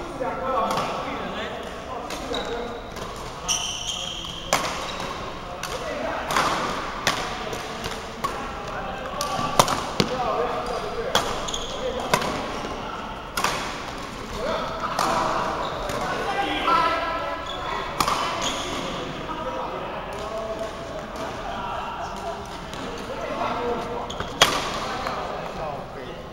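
Badminton rally: racket strings striking a shuttlecock in sharp, irregular cracks, with footfalls on the court floor, over voices in a large hall.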